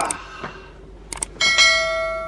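Subscribe-button animation sound effect: two quick clicks, then a bright bell chime struck about one and a half seconds in that keeps ringing.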